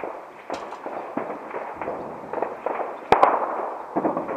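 Gunfire around the airport: irregular single cracks and bangs, echoing, with the loudest shot about three seconds in.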